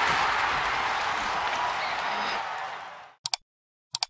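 A steady wash of applause-like crowd noise from an intro sound effect, fading out about three seconds in. It is followed by two quick clicks and one more at the very end, the mouse clicks of a subscribe-button animation.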